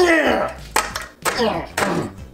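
A utensil stabbed down about four times into graham crackers on a ceramic plate, each strike clattering on the plate. A voice cries out with each stroke, falling in pitch.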